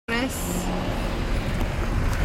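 Steady low road and engine rumble inside a moving car's cabin, with a brief voice sound right at the start.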